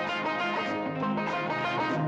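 Instrumental interlude of a 1974 Kannada film song: an ensemble playing with a steady rhythm and a moving bass line, with no singing.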